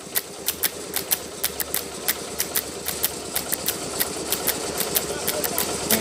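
Concrete mixer's engine running with a steady low hum, under a run of sharp clicks about three a second.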